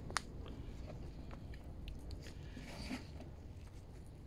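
Fine potting compost crumbled by hand and scattered into a plastic seed tray: faint, scattered crackles and ticks, with one sharper click just after the start.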